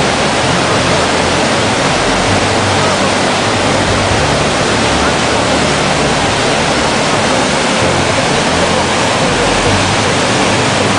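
Muddy floodwater of the Oued Béchar in spate, rushing and churning in standing waves: a loud, steady roar with no let-up.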